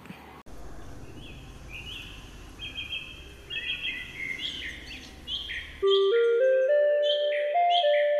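Birds chirping in short repeated calls over a low outdoor hum. About six seconds in this cuts off and a short musical jingle starts, its clear notes stepping upward one after another.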